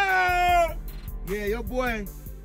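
A man's long, high-pitched wordless cry, then a few shorter vocal yelps, with background music underneath.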